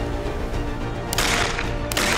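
Two shotgun shots in quick succession, the first a little over a second in and the second near the end, each a sharp crack with a short hiss of echo, over background music.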